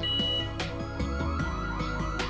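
Burglar alarm siren sounding a fast warbling alarm tone, about three rising-and-falling sweeps a second, triggered by the panel's SOS alarm.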